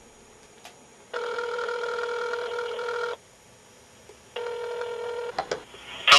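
Telephone ringing: a steady electronic ring about two seconds long, a pause of about a second, then a second ring that cuts off after about a second as the call is answered.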